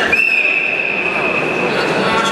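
A single long, steady, high-pitched signal tone, a whistle or timer signal, lasting about a second and a half over hall crowd noise. It marks a stop in the combat sambo bout.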